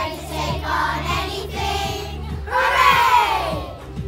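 A children's choir singing together over an instrumental backing track. About two and a half seconds in, the voices swell into their loudest, longest note, which slides down in pitch.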